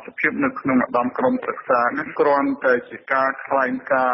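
Speech only: a single voice narrating a news report in Khmer without pause.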